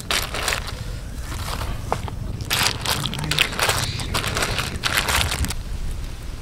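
Clam shells clattering and scraping against each other and the aluminium pot as they are stirred with a stick, in several bunches of rapid clicks.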